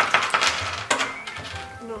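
A handful of gold coins spilling out of a torn package and scattering onto a tabletop: a sudden clattering burst of many clinks, with one more strong clink about a second in, dying away by a second and a half.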